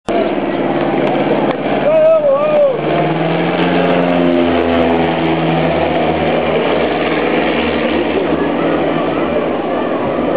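Single-engine light propeller plane droning as it flies low overhead, with people's voices and a wavering call about two seconds in.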